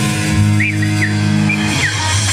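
Live band of electric guitar, electric bass and drum kit playing: the bass holds long low notes while the electric guitar plays a few short, high bent notes that rise and fall, with only light drumming.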